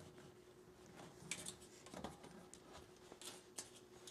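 Quiet handling: faint rustles and a few light clicks as cloth is tucked under the edge of a metal mesh ironing board, over a faint steady hum.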